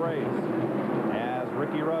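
Steady drone of NASCAR Winston Cup stock cars' V8 engines at racing speed, heard under a commentator's voice on the television broadcast.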